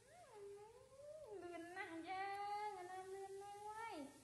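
Baby monkey crying: one long, wavering whine that rises in pitch in the first second, holds fairly steady, then drops away near the end.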